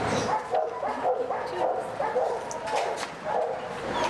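A dog whining and yipping in a string of short, high calls, two or three a second.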